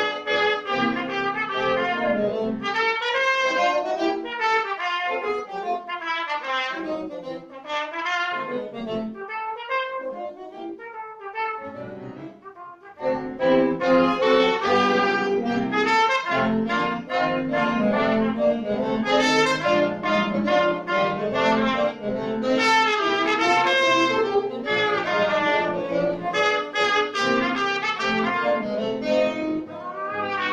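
A wind trio of French horn, trumpet and saxophone playing a lively piece in quick, short notes. Through the middle third the playing thins out and grows quieter, then all three come back in loud a little before halfway.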